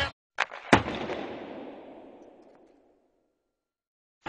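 A faint click, then a single sharp bang about a second in that rings away in a long echoing fade over about two seconds.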